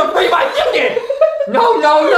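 Speech only: a man's voice saying 'I had to free my chicken!' and then 'No no no!'.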